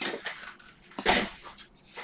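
Handling noise on a table: irregular rustles and knocks, with a louder clatter about a second in.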